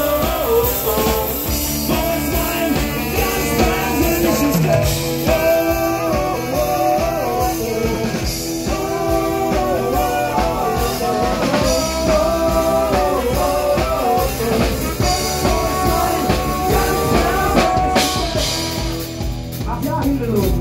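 Live band playing an upbeat rock song with accordion, electric guitar, bass guitar and drum kit.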